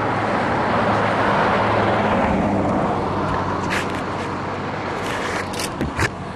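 Road vehicle noise: a steady rushing with a low hum that swells over the first two seconds and then eases off. Near the end come a few short clicks and knocks as the camcorder is moved.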